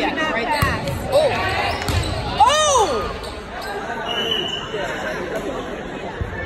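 Volleyball being served and played in a gym: a few sharp thumps of the ball being hit in the first two seconds, amid shouting from players and spectators. The loudest sound is one long rising-then-falling shout about two and a half seconds in.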